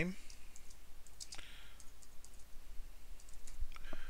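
Computer keyboard being typed on: a short phrase entered as a run of separate light key clicks.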